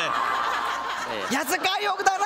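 People in a studio audience and panel laughing, with a man's voice cutting in over the laughter about a second in.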